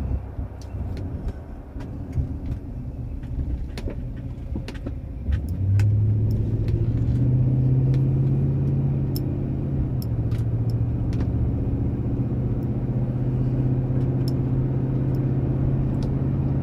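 Car engine and road noise heard from inside the cabin while driving. About five seconds in, the engine drone gets louder and rises in pitch as the car accelerates, then holds steady, with scattered light clicks.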